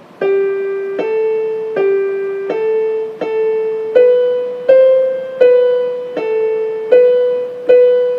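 Keyboard in a piano voice playing a simple single-note melody that moves up and down by step, about eleven evenly paced notes, each struck and left to fade, with no chords.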